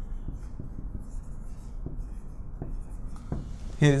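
Marker pen writing on a whiteboard: a run of short, faint scratchy strokes with small taps, in a small room.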